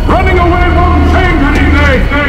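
A woman's voice in one long cry that sweeps up at the start and is held for about two seconds, wavering near the end, over a deep steady drone.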